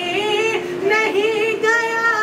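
A single high voice singing a manqabat (Urdu devotional song) unaccompanied, drawing out long, wavering notes.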